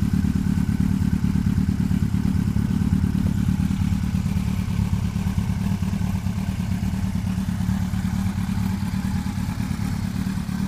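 Yamaha FZS1000 Fazer's inline four-cylinder engine idling steadily through an Arrow aftermarket exhaust silencer, with a deep, even exhaust note.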